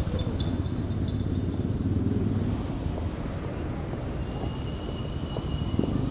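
Street traffic: a motor vehicle's engine running nearby as a steady low rumble, fading slightly after the first couple of seconds. A thin steady high whistle joins in near the end.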